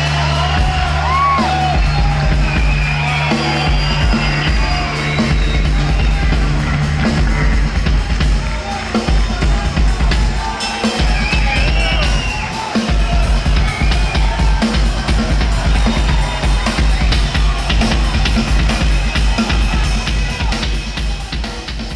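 Rock trio playing live, with distorted electric guitar, bass and a drum kit, loud. Held low notes fill the first half; from about eight seconds in the drummer pounds fast repeated bass-drum hits under the guitar and cymbals.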